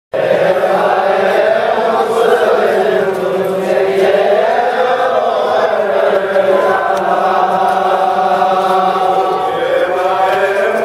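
Men's voices chanting a noha, the Shia mourning lament for Muharram, together in a continuous, loud chant with a melody that rises and falls.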